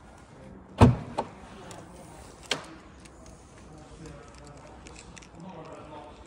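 Jaguar XF boot latch releasing at the touch of the boot button: a loud clunk about a second in, a smaller click right after, and another click about a second and a half later as the boot lid opens.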